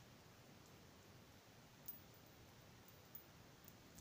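Near silence: room tone, with two faint clicks, about two and three seconds in, from the beads and chain of a hanging pentacle chime being handled; its small bells do not ring out.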